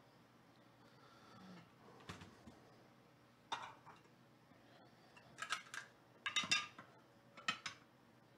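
Scattered short clicks and clatters of small objects being handled, loudest in a cluster about five and a half to seven and a half seconds in.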